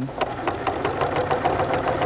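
Domestic sewing machine running steadily at speed, its needle clicking in a rapid even rhythm as it stitches yarn down onto the fabric.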